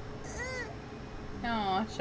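High-pitched cartoon character voice from the anime's soundtrack: a short arched cry about half a second in, then a longer wavering cry near the end, both cat-like in pitch.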